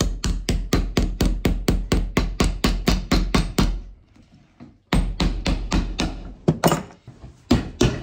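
A hammer driving iron hobnails into a leather boot sole: quick, even strikes about five a second, a pause about four seconds in, then more strikes, less evenly spaced.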